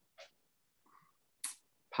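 A pause in a man's speech with only faint, short breath noises, ending in a quick, sharp intake of breath about one and a half seconds in, just before he speaks again.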